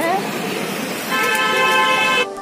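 A vehicle horn sounds in one steady, held honk starting about a second in, over street noise and voices.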